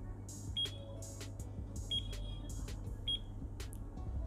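Digital alarm clock beeping as its buttons are pressed to set it: three short high beeps about 1.3 s apart, each with a click of the button.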